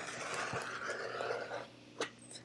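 Rotary cutter blade rolling along a ruler edge through layered cotton fabric on a cutting mat: a steady hiss for about a second and a half, then it stops.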